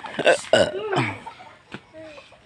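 A person's brief vocal sounds without clear words, lasting about a second, then fading to quieter small sounds.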